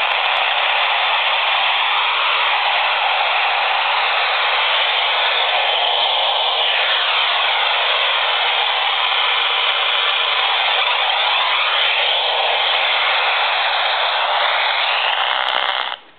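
Handheld AM radio tuned to an empty spot on the band near 530 AM, giving out loud static laced with slowly sweeping, warbling whistles. This is radio-frequency interference picked up from a laptop computer. The noise cuts off abruptly near the end.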